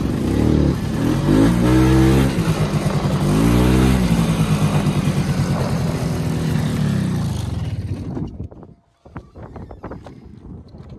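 Snowmobile engine revved three times, the pitch rising each time, then running steadily before it dies away and stops about eight seconds in.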